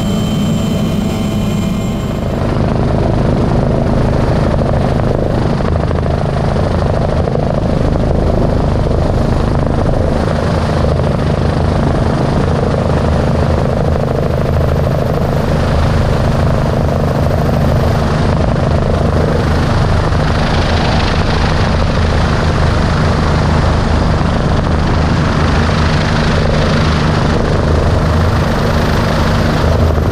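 Bell 429 twin-turbine helicopter in flight: a steady, loud drone of rotor and engines with a broad rush of noise above it. The sound shifts about two seconds in, then holds steady.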